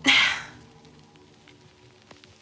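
A woman's short, sharp breath out, loudest right at the start and fading within about half a second, over faint sustained background music.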